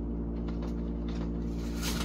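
Steady low hum of a running room air conditioner, with faint rustling and light knocks of cardboard packaging being handled, the clearest near the end.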